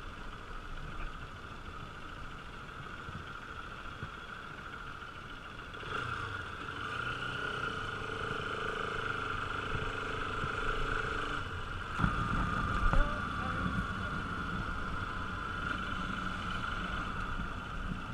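Bajaj Pulsar RS200's single-cylinder engine running at low speed on a rough dirt track. The engine note picks up about six seconds in, and there is a sudden jolt around twelve seconds in.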